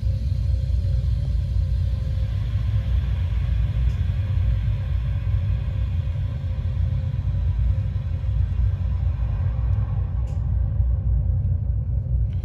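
Refrigerant hissing through a slightly opened liquid-line valve on a CO2 refrigeration rack as it fills the liquid line. The hiss thins out about ten seconds in, the sign that the line is filled with liquid. A steady low rumble runs underneath.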